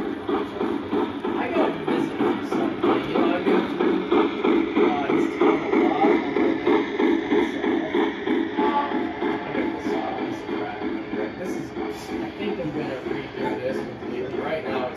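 Model steam locomotive's sound system chuffing in a steady rhythm, about four chuffs a second, as the engine and its freight train roll past, with voices in the background.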